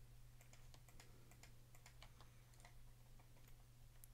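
Near silence with faint, scattered computer keyboard and mouse clicks over a low steady hum.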